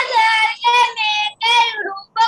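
A child singing in a high voice, a string of short held notes with brief breaks between phrases.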